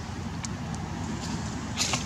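Steady low outdoor background rumble, with a few faint clicks and a short rustle near the end.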